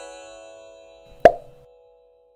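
Logo-intro sound effect: a bright, many-toned chime fading away, then a single sharp pop a little over a second in, followed by a short ringing tone that dies out.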